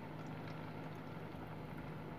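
Breadcrumb-coated chicken cutlets shallow-frying in oil on a low-to-medium flame: a faint, steady sizzle and bubbling of the oil.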